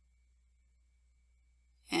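Near silence: a faint, steady room tone, with narration starting just before the end.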